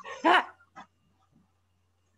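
A short burst of laughter in the first half second, then near silence.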